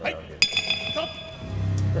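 Ring bell struck once to end the round, its metallic ring fading over about half a second. Low background sound, likely arena music, comes in shortly afterwards.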